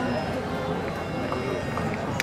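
A singing voice with the live Indian classical ensemble accompanying an Odissi dance, the melody sliding in pitch at a moderate, even level.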